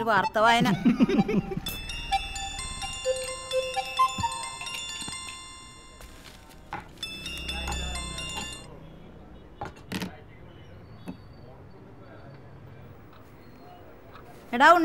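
Bright chiming notes, like a glockenspiel or bell melody, ring out in a cluster from about two to five seconds in and again briefly around seven to eight seconds, over quiet room tone, with a few sharp clicks later.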